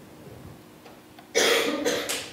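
Quiet room tone, then a person coughs once, a short sharp burst about a second and a half in.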